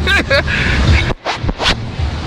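A man laughing in short bursts, the laughter turning breathy in the second half, over a low rumble of wind on the microphone.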